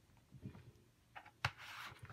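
A hand pressing and rubbing a clear stamp down onto watercolor paper: faint, with a sharp click about one and a half seconds in, then a short rubbing scrape.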